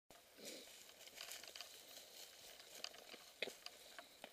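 Faint crackle and rustle of dry fallen leaves under a mountain bike's tyres as it rolls along a woodland trail, with scattered small clicks and knocks, the sharpest about three and a half seconds in.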